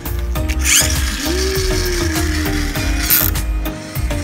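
Plastic toy monster truck's gear mechanism whirring and ratcheting for about two and a half seconds as the truck is rolled along the table.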